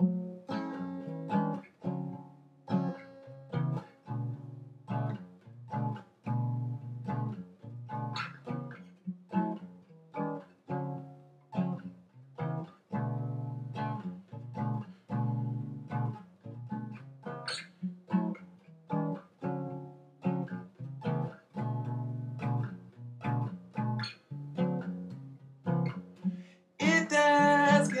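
Acoustic guitar played solo as a song intro: a repeating pattern of plucked notes, each ringing and fading. A man's singing voice comes in about a second before the end.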